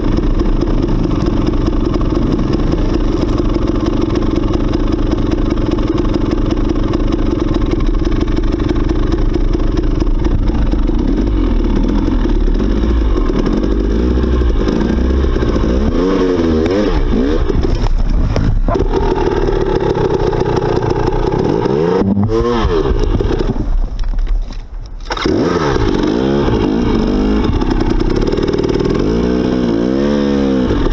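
Off-road dirt bike engine running at low trail speed, its revs rising and falling over and over as the throttle is worked over rough ground. The sound falls away briefly about two-thirds of the way through, then the engine carries on.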